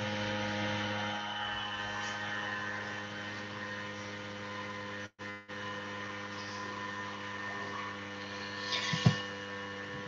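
Steady electrical hum with many even overtones, carried on the call's audio line, cutting out for a moment about halfway through. A short, louder sound comes near the end.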